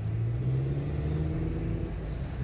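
Car engine and road noise heard from inside the cabin while driving slowly in city traffic. The engine note rises a little over the first second, as with gentle acceleration, then holds steady.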